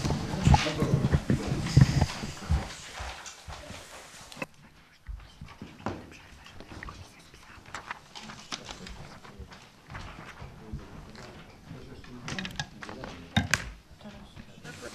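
Meeting-room bustle: indistinct low talk mixed with knocks, bumps and paper handling, busiest and loudest in the first few seconds, then quieter with scattered clicks and a couple of sharper knocks near the end.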